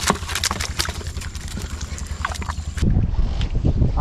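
Quick irregular clicks and patters as live giant river prawns (golda) are shaken out of a net into a plastic crate, over a steady low hum. About three seconds in, this gives way to a louder low rumble.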